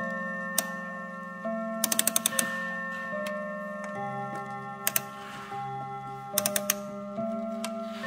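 Montblanc mantel clock's hammers striking its rod gongs in a chime melody, each struck note ringing on under the next, with small mechanical ticks between strikes.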